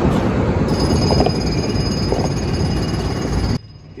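New Holland tractor's diesel engine running close by, a loud steady rumble that stops suddenly near the end.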